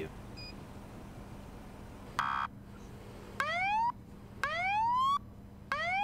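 Police siren on a Ford Police Interceptor Utility sounded in short bursts: one brief buzzy blast, then three rising whoops, each a little longer than the one before.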